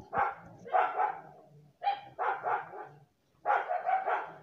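A dog barking repeatedly, short barks about once a second.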